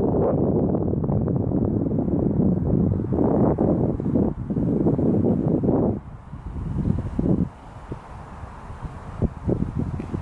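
Wind buffeting the microphone, a rough low rumble that is strong for the first six seconds and then falls back to weaker, uneven gusts.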